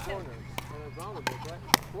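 Pickleball rally: sharp knocks of a paddle hitting the plastic ball and of the ball striking the hard court, three in all, the loudest near the end.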